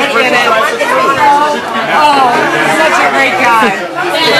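Speech only: a woman talking close to the microphone, with other people's chatter overlapping behind her.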